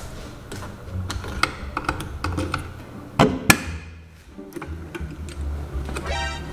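A room door being unlocked and opened: a string of small clicks and knocks, with two louder sharp clacks close together a little after three seconds in.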